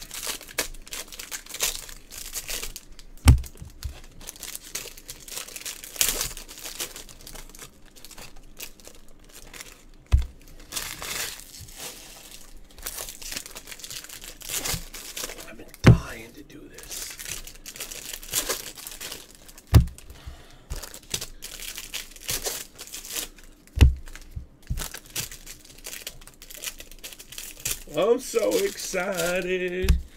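Foil trading-card pack wrappers being torn open and crinkled by gloved hands, a steady crackling rustle. Five dull knocks break it at intervals of about four to six seconds.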